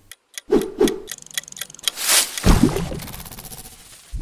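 Sound effects of an animated channel title card: two soft knocks, a run of clicks as the letters appear, then a rush of noise ending in a low thump, followed by a fast, fine ticking.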